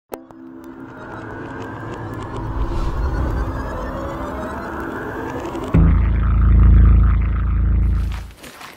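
Intro music for a title sequence: a click, then a swelling electronic build with quick ticks, cut off about two-thirds of the way through by a sudden deep bass boom that swells and then fades.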